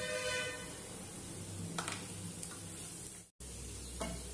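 Masala paste sizzling faintly in a non-stick frying pan. A brief ringing tone sounds at the start, there is a light tap about two seconds in, and the sound cuts out for a moment near the end.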